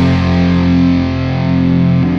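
Sludge/post-rock music: a heavily distorted electric guitar chord held and left ringing over a deep low end, with no drums.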